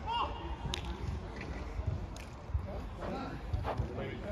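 Men's voices calling out at a distance on the pitch, in short bits over low background noise, with a few sharp knocks scattered through.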